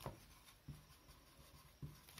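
Faint strokes of a felt-tip whiteboard marker writing letters on a whiteboard: a few short, separate taps and rubs as the letters are drawn.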